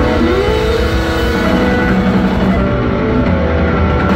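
Live rock band playing loud: distorted electric guitar, bass guitar and a drum kit, with one guitar note bending upward near the start.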